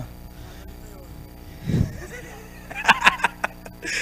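Indistinct voices of people standing close by, with a short low burst about two seconds in and a few seconds of murmured speech near the end.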